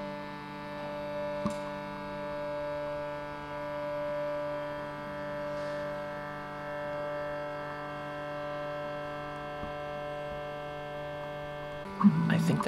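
A steady drone of many held tones sounding together like a sustained chord, swelling and easing gently about every two seconds: ambient synth-pad music.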